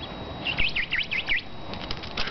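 A squeaky dog toy, a plush cow, squeezed five times in quick succession, each high squeak dipping and rising in pitch.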